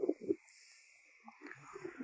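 A pause in a man's voice-over: the tail of a spoken word, then near silence with faint hiss, and a faint breath near the end.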